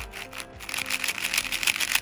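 Moyu AoSu WR M magnetic 4x4 speedcube being turned quickly by hand: a fast, dense run of crisp, crunchy plastic clicks as its layers snap into place, thickening from about half a second in.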